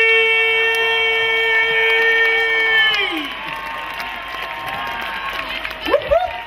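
A man's long, held shout through a PA system, sustained on one high note for about three seconds before falling away, followed by an audience cheering.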